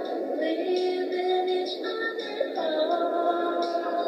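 A voice singing long, held notes over music, played back from a video on a screen and re-recorded, with no bass.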